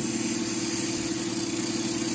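Wood lathe running steadily with a steady hum, while a 40-40 grind bowl gouge's bevel rubs against the spinning wood just behind the cut.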